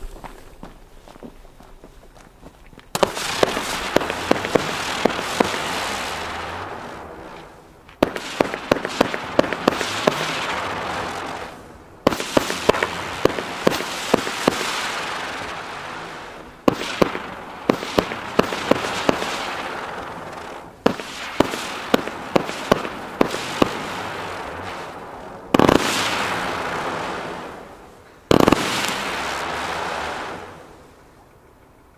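A Röder Chaos Kometen firework battery (49 shots of 20 mm turning coloured comets) firing in salvos. From about three seconds in come seven volleys, each a rapid string of sharp launch cracks over a rushing hiss that fades over a few seconds. The last two volleys open with the loudest bursts.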